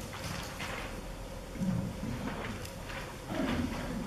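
Faint murmur of low voices with small shuffling and knocking noises in the hall during the pause before a piece. No music is playing yet.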